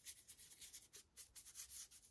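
Faint, rapid scratchy strokes, about six a second, of a paintbrush's bristles brushed back and forth over the edges of a hard 3D-printed plastic base, a dry-brushing stroke with most of the paint wiped off the brush.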